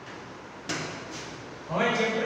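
A single short, dry scrape against the whiteboard about a second in, then a man's voice starts near the end.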